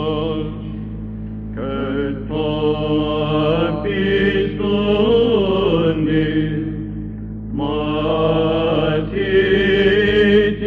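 Byzantine chant in the plagal second mode: a solo cantor sings a slow, ornamented melody over a steady held drone (ison). The melody breaks off briefly about a second in and again near seven seconds while the drone keeps sounding.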